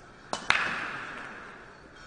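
Break shot in Chinese pool: a click of the cue tip on the cue ball, then a sharp crack as the cue ball hits the racked balls, followed by the clatter of the balls knocking together, dying away over about a second and a half.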